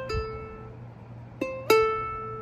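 Ukulele first (A) string played as a pull-off from the third fret to the open string: the higher fretted note drops to the ringing open note, and the same pull-off is played again about a second and a half later, its open note ringing on.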